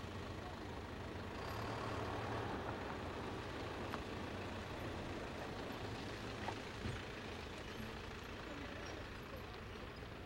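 Utility truck's engine idling with a steady low rumble, with a few short clicks and knocks from around the truck near the middle.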